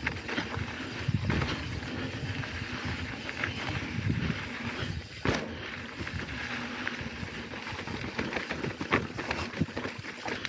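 Mountain bike rolling downhill on a dry dirt singletrack: tyre noise on dirt and gravel, with the bike rattling over bumps. There is one sharp knock about five seconds in.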